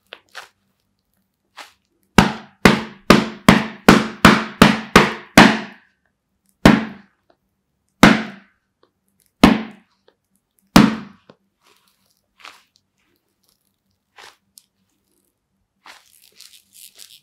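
Latex palms of Adidas Predator Accuracy GL Pro Hybrid goalkeeper gloves clapped together: about nine quick sharp claps, then four more spaced slower, each with a short ringing tail.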